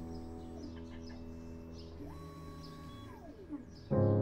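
Resin 3D printer's stepper motor moving the build plate: a whine that climbs in pitch about two seconds in, holds for about a second, then slides back down, with a shorter whine falling away at the start. Soft background music plays underneath.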